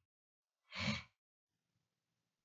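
A man's single short breath, a sigh-like exhale about a second in, with no speech.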